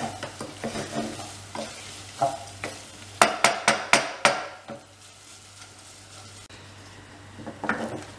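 Wooden spoon stirring risotto in a metal saucepan, scraping and knocking against the pot, over a soft sizzle of rice simmering in stock. A run of sharper knocks comes just before the stirring stops about halfway through, leaving only the quiet simmer.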